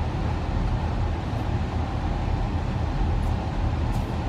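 Steady road noise of a car driving on a freeway, heard from inside the cabin: an even, mostly low rumble of engine and tyres.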